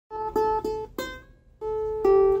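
Single notes plucked on a small bowl-backed four-string instrument: three quick notes on the same pitch, a higher note about a second in that rings out and fades, then another note near the end.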